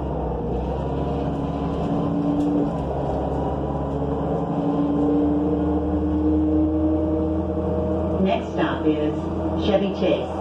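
Running sound of a 2005 New Flyer C40LF bus, its Cummins Westport C Gas Plus natural-gas engine and Allison B400R transmission, heard from inside the cabin with no HVAC running: a steady hum whose pitch climbs slowly as the bus picks up speed. A voice comes in near the end.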